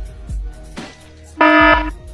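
Background music with low beats, then about one and a half seconds in a loud buzzing alert tone lasting about half a second: the sound effect for a phone's Amber alert.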